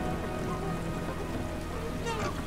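Rain sound effect over a low sustained drone in a song's ambient outro, with a few faint gliding cries coming and going in the background.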